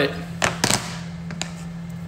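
A few light knocks and taps from a smartphone being handled and turned over in the hand: two close together about half a second in, and a fainter one later. A steady low hum runs underneath.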